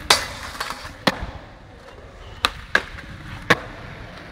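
Skateboard doing a backside Smith grind on a rail: a sharp pop and a clack of the trucks onto the rail, a scraping grind of about a second, and a hard clack on landing. The wheels then roll on concrete, with three more sharp board clacks in the second half.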